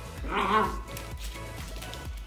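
Belgian Malinois puppy giving one short, wavering whine about half a second in while playing, over background music with a steady beat.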